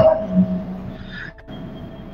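A pause in a man's talk: his last word fades away, then only a faint background hiss with a thin steady tone remains until speech resumes.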